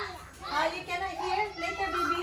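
A young child talking in a high-pitched voice.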